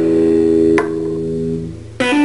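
Electric guitar played through a Fender combo amplifier: a held chord rings, a sharp click just under a second in cuts off its upper notes, and the low notes fade out near the end.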